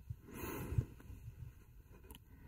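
A man's soft breath close to the microphone, lasting about half a second just after the start, with a small mouth click near its end.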